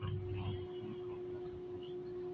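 A faint, steady hum held at one pitch, over light background noise.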